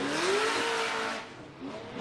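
Drift car's engine revving under load through a slide, its pitch climbing over the first second and then holding, with the hiss of the tyres sliding sideways; the sound fades a little past halfway.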